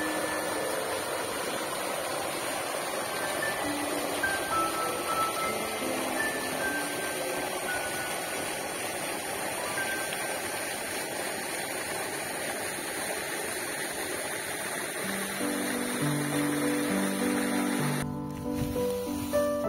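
Soft background music of sparse single notes over a steady rush of splashing water from a water spray jetting into a pool. The music grows fuller, with lower notes, near the end.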